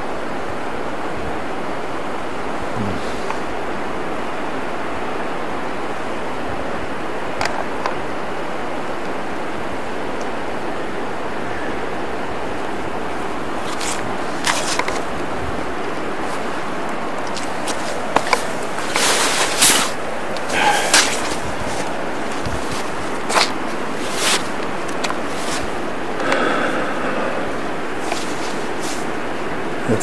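Steady hiss of rain, with scattered sharp taps of drops landing close to the microphone through the second half.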